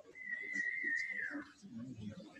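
A person whistling one long, steady high note that slides down in pitch at the end, lasting about a second and a half.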